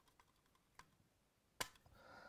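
Near silence broken by two small clicks, the louder one about a second and a half in: a screwdriver knocking against a plastic double socket as a terminal screw is finished off.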